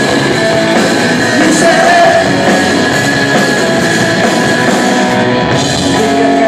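Live rock trio playing loud: electric guitar, bass and drums in full swing, continuous and steady.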